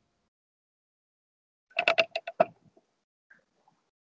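Microphone handling noise: a quick run of six or seven clicks and knocks lasting under a second, midway through, as a headset microphone is moved and adjusted, then one faint tick.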